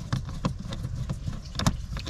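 Screwdriver turning a screw out of the plastic glove box trim: small scattered clicks and scrapes of the metal tool against the screw and trim, two of them sharper, over a steady low rumble.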